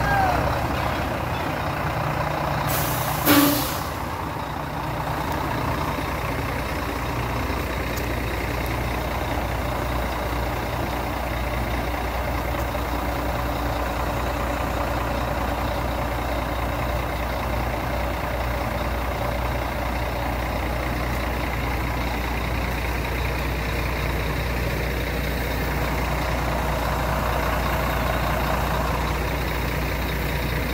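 Scania truck's diesel engine idling steadily. About three seconds in there is a short, loud burst of air hiss from the truck's air system.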